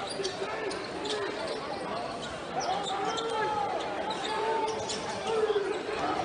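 Basketball game on a hardwood court: the ball bouncing and sneakers squeaking in short chirps as players move, over the murmur of spectators' voices in the arena.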